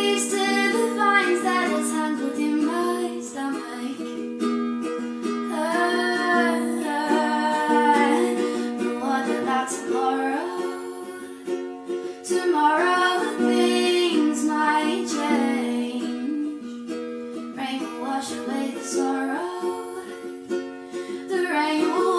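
Woman singing a slow song with her own ukulele accompaniment, sung phrases coming and going over the steady ukulele chords, in a small, reverberant room.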